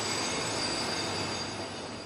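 A passenger train moving slowly past on the station tracks: a steady rolling noise with a thin, high wheel squeal running through it, easing off slightly near the end.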